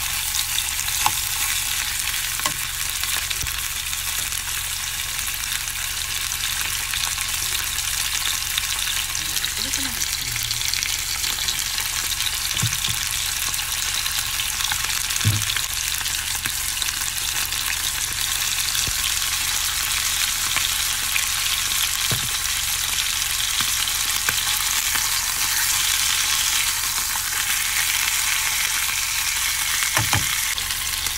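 Chicken pieces sizzling steadily in olive oil in a nonstick frying pan, with a few light knocks of metal tongs against the pan as the pieces are turned.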